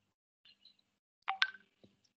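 Brief electronic beep tones, a couple of short sharp tones about a second and a quarter in, with a faint tick just before the end.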